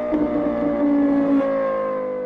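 Intro sound effect of a car engine revved high and held, one steady note that slowly sinks in pitch.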